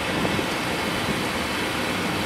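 Water running steadily from a sample tap into a small plastic sample bottle, an even rushing hiss.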